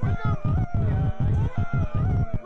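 Live electronic music from a mixer, sampler and synthesizers: a dense low bass chopped by short drop-outs, with wavering, gliding higher tones bending up and down above it.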